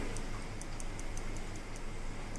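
Salt tapped from a steel spoon onto boiled potato pieces in a glass bowl: a scattering of faint, light ticks, over a low steady hum.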